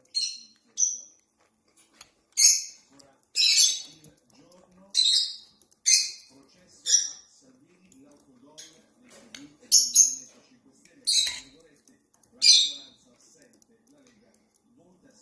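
Small parrot giving about ten short, harsh, high-pitched squawks, roughly one a second with a brief pause just past the middle, as it pecks at a teaspoon being stirred in a mug. A few light clicks of the spoon sound underneath.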